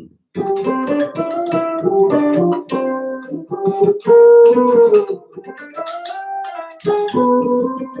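Six-string electric bass, strung E to C, played through an amplified signal chain: a melodic phrase of single notes and chords in the upper register, with a loud held note about four seconds in and a brief break near the end.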